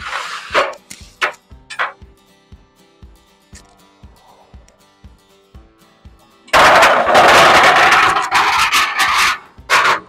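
Aluminium telescoping ramp scraping and rattling as it slides across a metal mesh trailer deck, a loud scrape of about three seconds starting past halfway and a short second one near the end, with a few lighter knocks of handling early on. Background music with a steady beat plays throughout.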